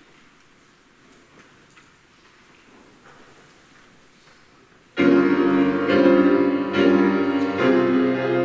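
Faint room noise for about five seconds, then a piano comes in suddenly and loudly, playing a run of chords about one a second.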